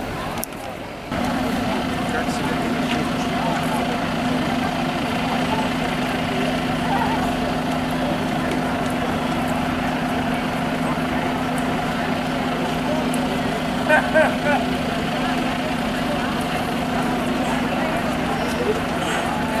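A steady engine hum, like a vehicle idling, under indistinct talk of people nearby. It starts about a second in and holds even throughout, with a few short louder sounds about fourteen seconds in.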